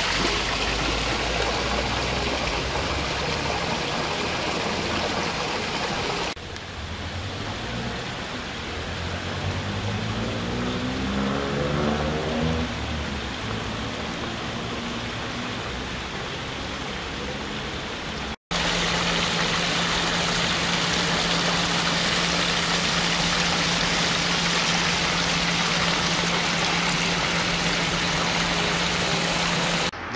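Water splashing from a small pond fountain. After a cut comes outdoor noise with an engine rising in pitch as a vehicle speeds up, and after a second cut a steady low hum over noise.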